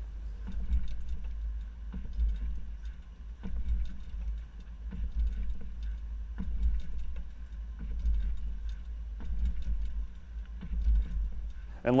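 Low, uneven rumble of road and wind noise on a camera mounted at the back of a slowly moving SUV, with scattered light clicks and knocks from the hitch bike rack and the bike it carries as the vehicle rolls over alternating speed bumps.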